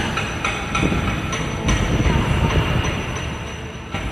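Steady, fairly loud low rumbling noise with faint scattered tones and clicks, and no singing.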